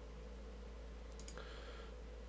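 Faint computer mouse clicks, a couple of them a bit over a second in, as drop-down menu items are selected. A low steady hum runs underneath.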